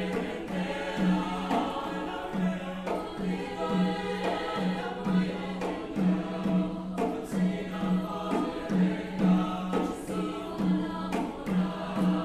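Choir singing, over a low note that pulses about twice a second.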